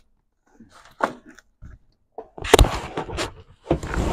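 Cardboard box and its packing being handled: rustling and scraping, with a couple of knocks about two and a half seconds in and more rustling near the end.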